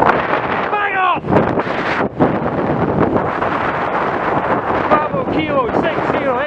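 Steady wind noise buffeting the microphone of a moving camera, with a voice breaking through briefly about a second in and again near the end.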